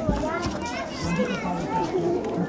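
Several children's voices chattering at once, overlapping and indistinct.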